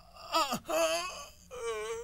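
A person wailing and sobbing in three drawn-out, wavering cries, with short breaks for breath between them.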